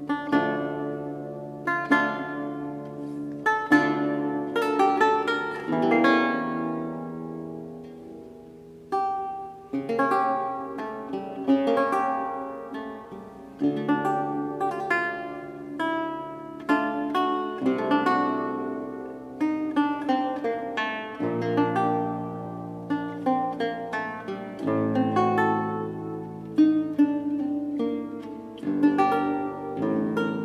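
Solo baroque lute playing at a slow pace: plucked chords and single notes that ring and fade over deep bass notes.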